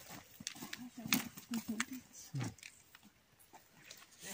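Quiet outdoor walking: scattered faint footsteps and clicks on a dirt path, with low, indistinct voices murmuring in the background.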